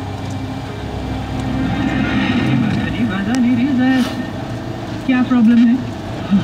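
A car's steady engine and road drone heard from inside the cabin. Over it, from about two seconds in, a person's voice with a wavering pitch becomes the loudest sound.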